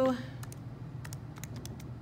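Keys of a TI-84 Plus graphing calculator being pressed, a quick, irregular string of short clicks.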